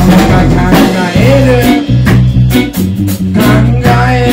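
A live band playing an upbeat song: guitar and drum kit over a sustained bass line, with a steady, evenly spaced beat.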